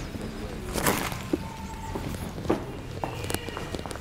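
Footsteps on brick paving, a few steps roughly a second apart.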